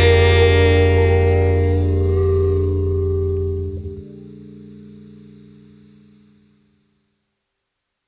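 A band's final chord ringing out, with electric guitar and bass. The bass stops about four seconds in and the remaining notes fade out over the next few seconds.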